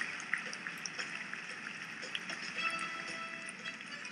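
Audience applauding, the clapping gradually fading away.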